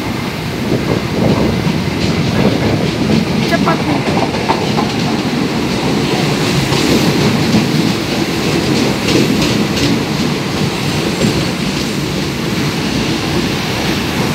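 Mitsubishi subway train running into the station and passing close by: a loud, steady rumble of wheels on the rails, with a few sharp clicks along the way.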